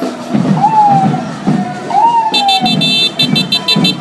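Ambulance siren sounding a repeating wail, each cycle rising quickly and falling slowly, about one every second and a half. A rapid pulsing high-pitched tone joins it past halfway.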